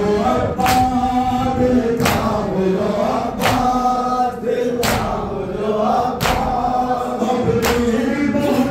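Men's voices chanting a nauha refrain together in unison. Six sharp unison chest-beats of matam, hands striking bare chests, fall at an even pace about every one and a half seconds.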